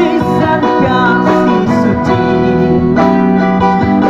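Live busking band music led by amplified guitars, playing a passage with little or no singing.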